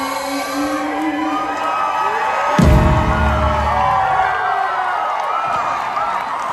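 A live band finishing a song: a held note fades, then a single loud final hit with deep bass rings out for about two seconds, while the crowd cheers and whoops throughout.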